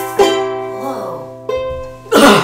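Ukulele strumming two final chords, one about a fifth of a second in and one about a second and a half in, each left to ring and fade away as the song ends.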